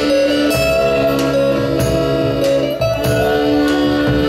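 A live band playing an instrumental passage: an accordion holds a melody of sustained notes over acoustic-electric guitar and a steady drum beat.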